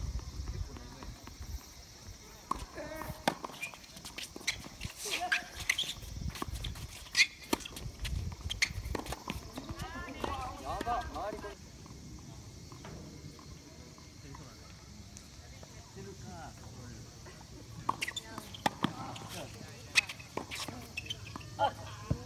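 Tennis rally: a series of sharp racket-on-ball hits and ball bounces, several to the second or so, for about seven seconds, followed by players' shouts. Near the end the hits start again as the next point is played.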